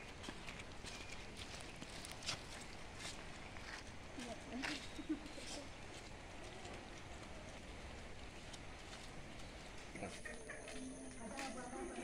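Faint footsteps on a wet, muddy dirt road: scattered soft steps, with faint distant voices now and then.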